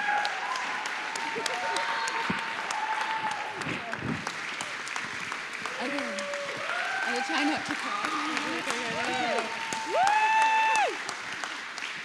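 Audience applauding, with voices over the clapping; one long voice call is loudest about ten seconds in.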